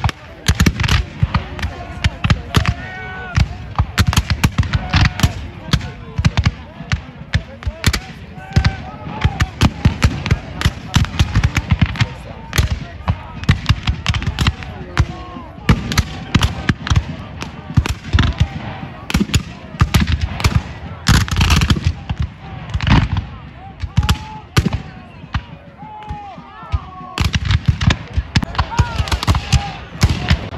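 Black-powder muskets firing in a ragged, continuous volley, many shots overlapping with no pause, with men's voices yelling over the gunfire.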